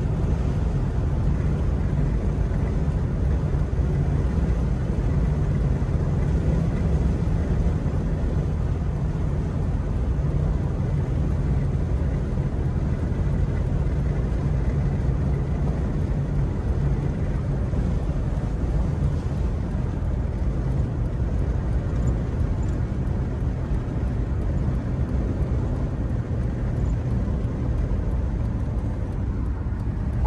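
Steady low rumble of a vehicle driving, road and engine noise with no sharp events.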